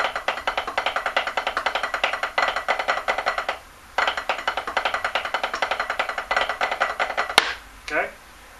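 Snare drum played with sticks in a rapid, continuous stream of strokes: a rudimental backsticking passage in 3/4 mixing flipped butt-end strokes with normal strokes. There is a brief break about three and a half seconds in, then one sharp accented stroke near the end.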